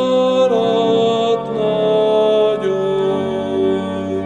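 A man singing a slow Reformed hymn over sustained organ accompaniment, holding long notes; the organ's low bass note changes about three seconds in.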